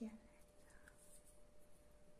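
Faint, close-miked hand sounds: skin brushing and fingers rubbing as the hands move in front of the microphone. A brief click and a short soft vocal murmur come right at the start.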